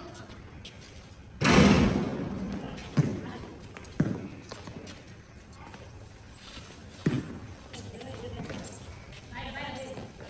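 Basketball bouncing on a paved court: single sharp thuds about three, four and seven seconds in, over faint voices. A louder, longer burst of noise comes about a second and a half in.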